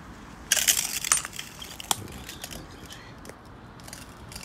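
Broken glass and debris crunching and clinking: a dense burst of sharp crackles about half a second in, a single sharp snap near two seconds, then fainter scattered clinks.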